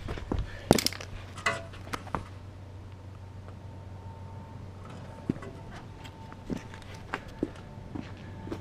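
Scattered light clicks and knocks of hands working a license plate on its front-bumper mount, tilting it straight, with a low steady hum underneath.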